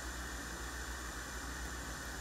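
Room tone: a steady hiss with a low hum underneath, with no distinct event.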